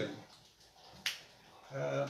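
A single sharp click about a second in, in a quiet pause between a man's speech.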